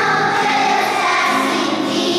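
A choir singing a hymn in long held notes.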